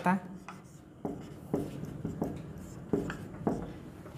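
Marker writing on a whiteboard: a handful of short, scratchy strokes with faint squeaks as a fraction and a minus sign are written.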